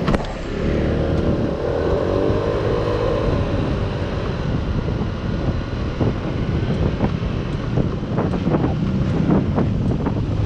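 Kymco Like 125 scooter being ridden, its single-cylinder engine running under steady road and wind noise on the microphone. An engine note climbs and then eases off over the first few seconds, and a few short knocks come in the second half.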